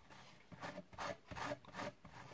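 Table knife scraping across slices of white bread as a spread is put on, in about four strokes roughly half a second apart.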